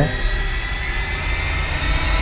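Steady low rumbling drone with faint sustained high tones: a suspense sound effect in a drama's background score.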